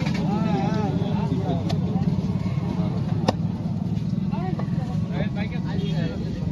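Voices talking over a steady low rumble; about three seconds in, a single sharp knock of a large knife striking the wooden chopping block.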